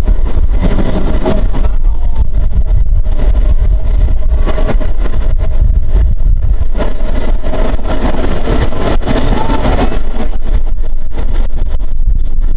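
Vintage BMT BU wooden gate car running at speed on open track, heard from its front end: a loud, steady rumble with frequent sharp knocks of wheels over the rails, and a short rising squeal a little past nine seconds.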